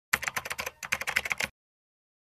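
Typing sound effect: a rapid run of key clicks, about a dozen a second, stopping after about a second and a half.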